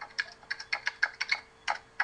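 Computer keyboard typing: a quick, uneven run of about a dozen keystrokes as a formula is entered, with a short pause before the last couple of keys.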